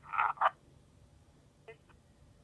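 Digitally decoded P25 Phase II police radio traffic through a Uniden BCD436HP scanner's speaker: a half-second burst of vocoded voice audio that does not come through as clear words, then quiet with a brief faint blip near the end.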